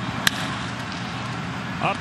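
A baseball bat strikes a pitched ball once, a single sharp crack about a quarter-second in, sending a ground ball up the middle. A steady background noise runs underneath.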